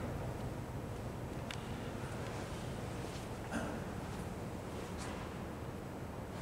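Steady low background noise of a machine-shop floor, with a few faint clicks and a short soft bump about three and a half seconds in.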